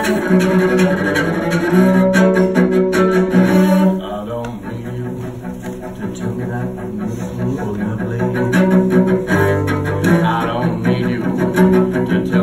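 Solo cello bowed in long, sustained notes as an instrumental passage. It drops to a softer stretch about four seconds in, then swells again near the end.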